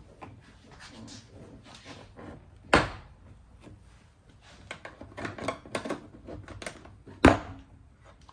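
Plastic pressure clips of a door trim panel popping loose as the panel is pried off the door with a plastic trim tool. There are two loud sharp snaps, about three seconds in and near the end, with smaller clicks and scrapes of the plastic panel between them.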